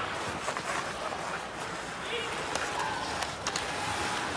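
Ice hockey arena sound during live play: a steady wash of crowd noise, with sharp clicks and clacks of sticks, skates and puck on the ice, several of them in the second half.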